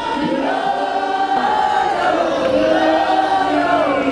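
A choir of many voices singing together in harmony, in two long phrases of held notes.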